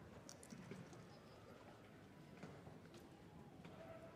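Near silence: faint arena room tone with a few soft, scattered taps.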